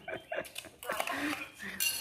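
Spoons clinking and scraping against metal serving pots and bowls during a meal, several short clicks in the first half second, with people's voices in between.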